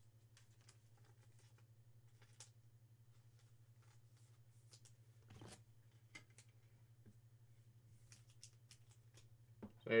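Faint handling of a trading card and a rigid clear plastic card holder: scattered soft clicks and light rustles as the card is slid in, over a steady low hum.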